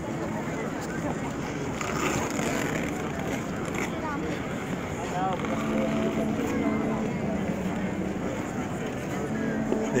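Busy ice rink: a crowd of skaters talking, over the steady hiss and scrape of skate blades on the ice.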